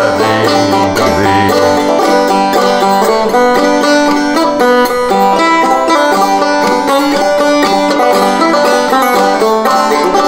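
Five-string banjo played in frailing (clawhammer) style: a steady, unbroken run of brisk picked notes carrying a simple folk melody.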